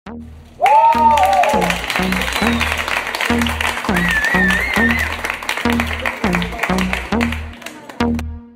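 An audience clapping and cheering over loud dance music with a steady bass beat. The sound comes in abruptly just over half a second in with a high cheer, and a high warbling cry rises above the crowd about halfway through.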